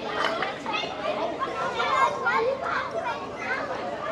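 A group of young children playing outdoors, many voices chattering and calling out at once.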